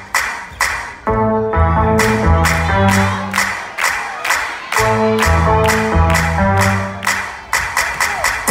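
Loud dance music with a strong beat and a deep bass line, the performance's backing track.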